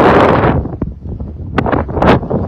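Wind buffeting the microphone: a loud gust that dies away about half a second in, leaving a low, quieter rumble.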